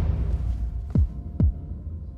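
Suspense film score: a low drone under two deep, heartbeat-like booms about a second in, each falling in pitch, after a whoosh swell that fades at the start.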